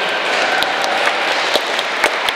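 Applause from a church congregation: a dense, steady patter of many hands clapping, with scattered sharper single claps standing out.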